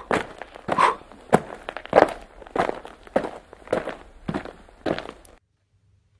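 Footsteps walking at a steady pace, nearly two steps a second, cutting off suddenly near the end.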